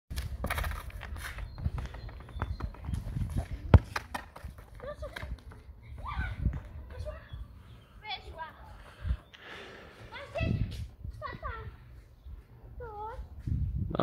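A football being kicked and bouncing on asphalt, with a sharp thud about four seconds in as the loudest sound. A child's voice calls out at times over a low wind rumble on the microphone.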